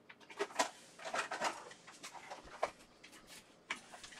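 Scattered light clicks, knocks and rustling of things being handled as a clear plastic parts box is fetched.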